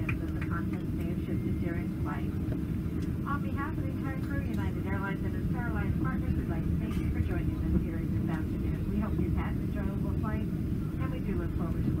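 Cabin noise of a Boeing 777-200 taxiing after landing: a steady low rumble, with a voice speaking over it throughout.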